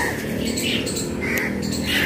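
Birds chirping, a few short calls over a steady outdoor background.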